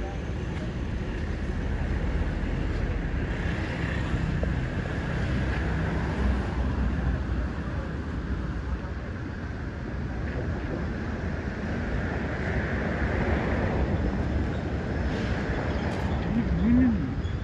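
Wind rumbling on a handheld phone's microphone, a steady, uneven low noise with no distinct events.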